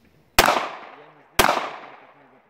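Two pistol shots about a second apart, each trailing off in an echo.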